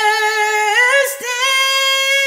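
A woman singing unaccompanied, holding a long sustained note that steps up in pitch about halfway through.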